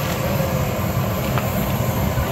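Aircraft turbine running on an airport apron: a loud, steady rumble with a thin high whine held above it.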